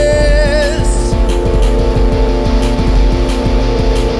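Alternative rock band playing an instrumental passage live: distorted electric guitars holding a chord over driving drums, with a high note wavering in pitch for about the first second.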